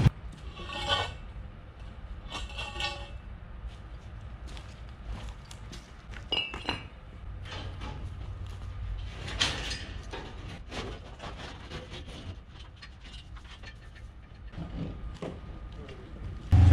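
Steel farm gate panels clinking and rattling now and then as they are moved by hand, with a steady low hum underneath.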